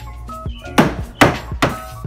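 Three hammer blows on wood, about half a second apart, driving a wooden peg into a pallet-board wall, over background music with a steady beat.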